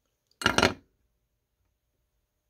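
A brief clatter of small hard objects knocking together, about half a second in, over in under half a second.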